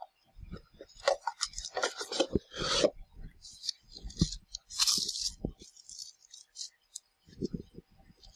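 Cardboard watch packaging and a fabric pouch being handled: irregular rustling, scraping and light knocks of card, loudest and most crinkly in the first three seconds and again about five seconds in.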